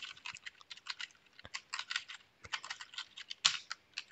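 Typing on a computer keyboard: an irregular run of quick key clicks.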